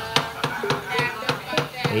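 Quick, even wooden knocking from the gamelan percussion accompanying a wayang kulit show, about five knocks a second, with a faint voice behind.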